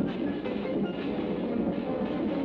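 Cartoon soundtrack: a steady rumbling, train-like rolling sound effect for a large cylinder being rolled along the ground, with music playing over it.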